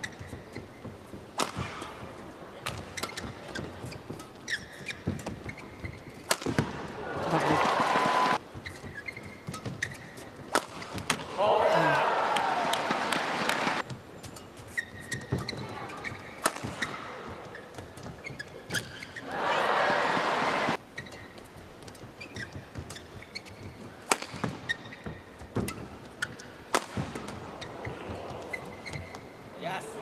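Badminton rallies: racquets strike the shuttlecock in sharp, irregular cracks. The arena crowd breaks into cheering and shouting three times, about seven, eleven and nineteen seconds in, each burst lasting a second or two.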